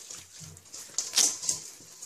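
Hands rubbing and massaging butter and spices into a raw lamb shoulder in a stainless steel bowl: soft, wet squelching, with a few sharper smacks about a second in.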